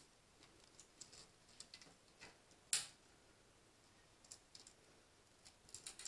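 Near silence with faint, scattered light clicks and ticks from hands handling a decorated metal mailbox and its small chain, with one sharper click a little under three seconds in.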